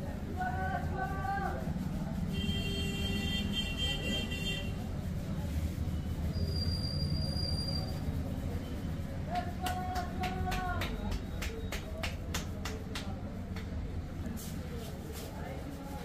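Steady low rumble of background traffic, with a horn-like toot and snatches of distant voices. A quick run of sharp clicks comes near the middle.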